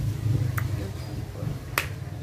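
Two finger snaps about a second apart, the second one louder, over a steady low hum.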